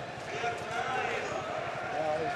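Indistinct talking in the background over a steady murmur of outdoor street noise.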